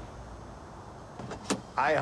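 Car door being opened: two sharp latch clicks about a second and a half in, over a low steady background hiss.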